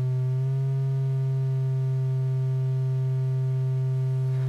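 Befaco Even VCO's triangle-wave output sounding a steady tone on C as its fine-tune control is turned to bring it back in tune; the pitch wavers slightly near the start, then holds.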